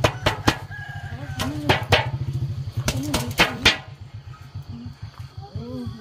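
Chickens clucking, with a rooster crowing, over a string of sharp knocks in the first half and a low steady hum.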